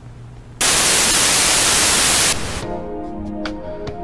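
A low hum, then about half a second in a sudden loud burst of analog TV static that lasts nearly two seconds. It cuts into station-ident music of held notes, with a few faint clicks over it.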